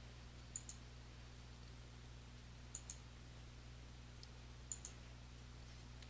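Computer mouse button clicking: three pairs of quick, sharp clicks about two seconds apart, over a faint steady low hum.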